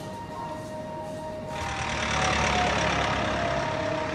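A car driving past, a rising rush of engine and tyre noise from about one and a half seconds in, over a steady background music drone.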